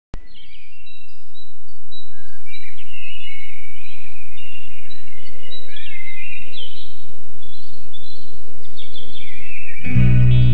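Birds singing, many overlapping chirps and warbles over a steady low outdoor rumble, fading in over the first two seconds. The birdsong stops suddenly just before the end.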